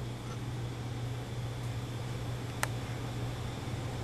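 Steady low background hum with a single short, sharp click a little after halfway.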